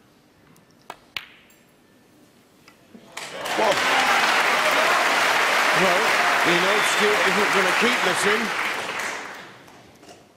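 Two sharp clicks of snooker balls about a second in, from the cue ball being struck and hitting an object ball. A couple of seconds later a crowd's applause swells, holds loud for about five seconds with a voice briefly heard over it, and fades near the end.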